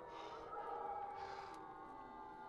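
A gray wolf pack howling, several long overlapping howls gliding gently in pitch, with two heavy breaths close by.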